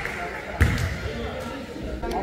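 A basketball bounces once on a hardwood gym floor, a sharp thud about half a second in, over murmuring voices in the gym.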